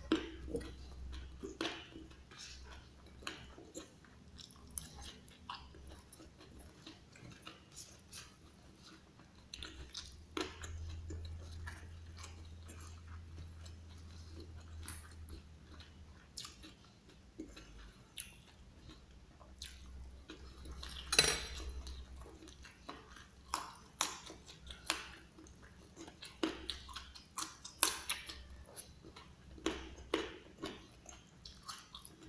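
Close-up chewing and biting of a mouthful of raw leunca berries (black nightshade) and rice: irregular wet mouth sounds and small crunches throughout, with one sharper click about two-thirds of the way through. A low hum runs underneath.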